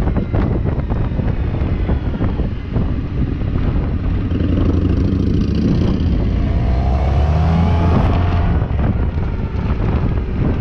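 Suzuki Burgman maxi-scooter on the move, with wind rumbling on the microphone and engine noise. The engine rises in pitch as it accelerates from about six to eight seconds in.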